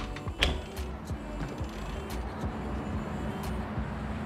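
A glass balcony door's handle and latch click sharply as the door is opened, about half a second in. Steady city traffic noise follows, under background music.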